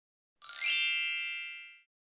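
A bright, high-pitched chime: the logo sting at the start of the video. It rings in about half a second in and fades away within about a second and a half.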